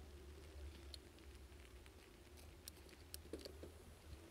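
Near silence: a faint steady low hum with scattered light ticks, picked up by a camera mounted on a moving bicycle.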